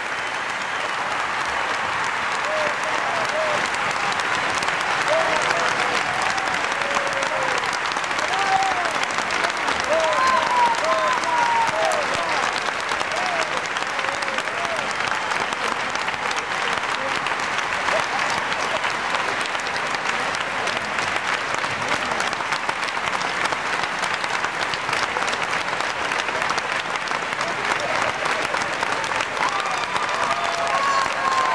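Large audience applauding steadily in a standing ovation, a little louder in the first half. Voices call out over the clapping in the first half and again near the end.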